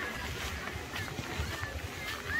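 Open-air park ambience recorded on a handheld phone while walking: a steady low rumble with faint distant voices and brief high chirps.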